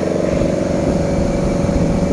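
Steady running hum of an engine or machine, a held droning tone over a low rumble, unchanging throughout.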